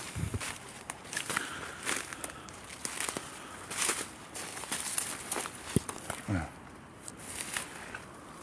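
Footsteps crunching through dry leaf litter at a brisk walking pace, with the rustle of brushing through forest undergrowth, and a single low thump about three-quarters of the way through.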